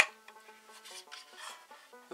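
Soft background music of steady, stepping notes. At the very start there is one sharp click of the plastic magazine and fan unit being handled.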